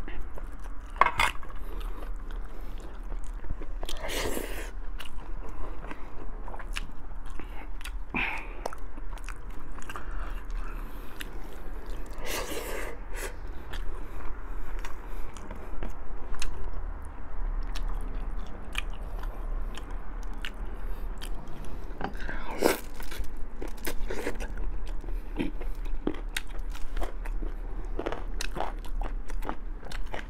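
Close-miked mouth sounds of a person eating boiled pork ribs: chewing and biting on the meat, with many small wet clicks and smacks and a few louder moments, about four, twelve and twenty-two seconds in.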